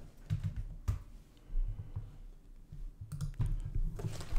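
Quiet, scattered clicks and light knocks, the clearest about a second in and a small cluster near the end, over a steady low hum.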